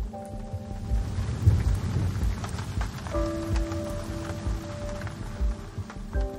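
Rain falling, with a low rumble of thunder swelling about a second and a half in, over soft background music with a steady low beat.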